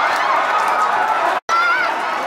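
Stadium crowd noise: many fans shouting and calling at once over a steady roar, cut off abruptly for an instant about a second and a half in by an edit.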